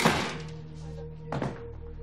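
A door thudding shut: one loud knock with a short ringing tail, then a softer knock about a second and a half in, over quiet background music with low held notes.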